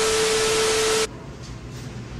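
TV-static glitch transition sound effect: a burst of loud hissing static with a steady beep through it. It lasts about a second and cuts off suddenly.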